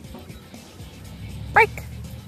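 A blue Doberman Pinscher puppy gives one short, sharp bark about a second and a half in, over background music with a steady beat.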